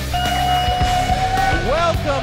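Rock theme music: a long held note, then notes bending up and down near the end.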